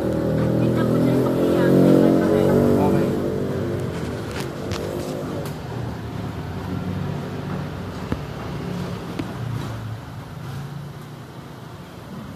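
A motor vehicle's engine running near the shop, loudest about two seconds in and then slowly fading away.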